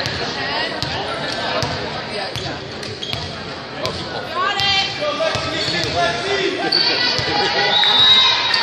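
A volleyball bouncing several times on a hardwood gym floor, with thuds and shoe squeaks echoing in the hall, over the voices of players and spectators.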